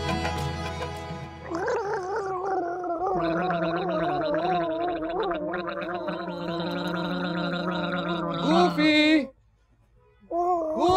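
Background music fades out, then two people gargle water in their throats with a voiced, wavering warble that runs for several seconds and cuts off suddenly about nine seconds in.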